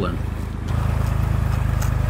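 Tractor engine running with a steady low throb, slightly louder from about two-thirds of a second in as it pulls a chain hooked to a tire through a culvert.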